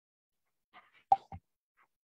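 A few short, sharp clicks about a second in, the middle one the loudest, a pop-like tick.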